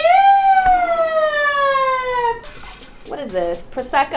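A woman's voice holding one long high 'ahh' that slides slowly down in pitch for about two seconds, followed by shorter, lower gliding vocal sounds near the end.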